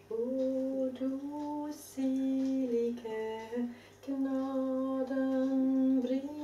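A woman humming a slow melody unaccompanied, holding each note and stepping between pitches, with short breath pauses about two and four seconds in.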